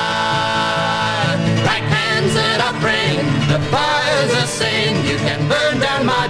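1960s folk song recording with acoustic guitar and voices. A long held chord in the first second gives way to a moving, wavering melody about a second and a half in.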